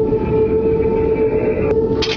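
Ominous horror-soundtrack drone: one steady low tone held over a dense rumble, with a higher layer that cuts off with a click near the end.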